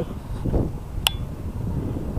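Wind rumbling on the microphone, with one short metallic click that rings briefly about a second in.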